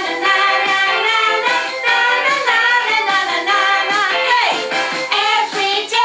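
A children's hello song: voices singing a melody over musical accompaniment.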